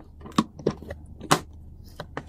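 Hard plastic Daiwa lure box being handled: a few sharp clicks and knocks from its lid and latches, the loudest about a second and a half in.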